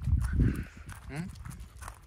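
A small black-and-white terrier makes a short, low sound in the first half second, the loudest thing here. About a second in, a man asks a questioning "eung?" in reply.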